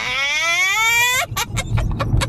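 A single high-pitched, voice-like squeal that rises steadily in pitch for just over a second, then breaks off.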